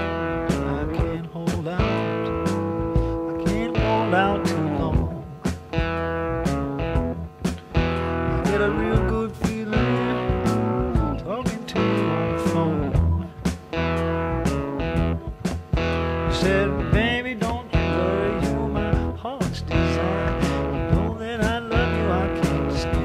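Overdriven electric slide guitar on a Fender Stratocaster playing a blues lead. Its notes glide up and down between pitches over a band with steady drums and bass.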